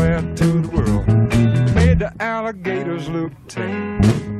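Blues-rock band groove with electric guitar riffs over a heavy bass line and drums, an electric bass guitar played along with it.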